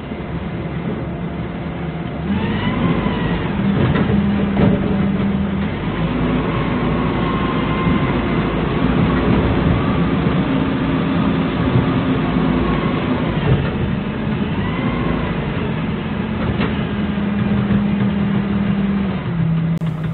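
Doosan 4.5-ton forklift's engine running as it drives over a rough dirt track, its speed rising about two seconds in and wavering after that, with a faint whine rising and falling at times and occasional knocks.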